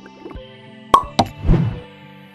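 Cartoon-style pop sound effects over a steady music bed: a sharp pop about a second in, a second one just after, and a fuller, falling pop shortly before the end.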